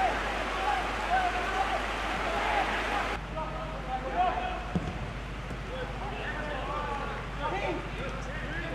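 Football match ambience: scattered shouts and calls from players on the pitch over a steady background hiss and low hum. The hiss drops abruptly about three seconds in.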